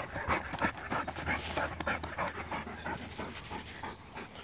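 A dog sniffing and panting hard with its nose in a gopher hole: quick, irregular breaths.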